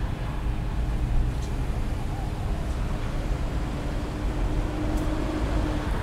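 Street background of steady traffic noise: a low rumble with a faint steady hum that stops just before the end.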